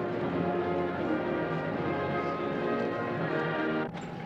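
Ceremonial processional music from a band with prominent brass, playing held chords steadily. It cuts off abruptly just before the end.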